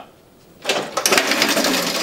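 A metal-legged school chair knocked over, clattering and rattling onto a hard floor for over a second.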